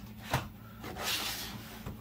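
Small cardboard boxes being handled on a tabletop: a light knock about a third of a second in, then a brief rustle of cardboard sliding.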